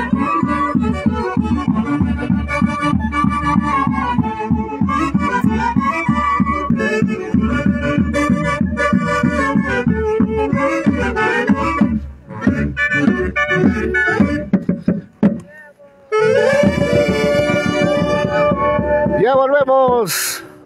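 Saxophone band with drums playing Santiago festival music, the saxophones carrying the tune over a fast pulsing drum beat. The tune breaks off about three-quarters of the way through, and the saxophones then hold one long chord near the end.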